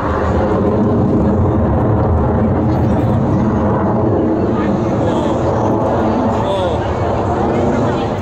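Jet engine noise from a twin-engine fighter flying aerobatics overhead, loud and steady throughout. Voices of nearby people sound under it.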